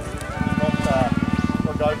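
Voices over background music, with a fast, even pulsing underneath.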